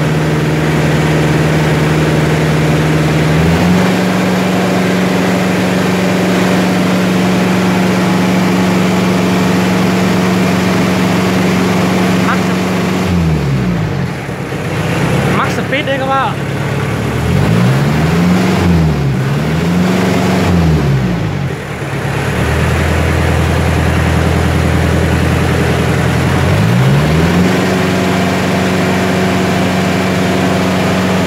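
Kubota L3602 tractor's diesel engine running, its speed raised and lowered several times. It steps up a few seconds in, drops back around the middle, is blipped up and down three times, then is held at the higher speed again near the end.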